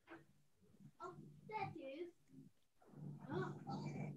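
Faint, indistinct talking heard over a video call, too unclear to make out words, in two stretches with a short pause between.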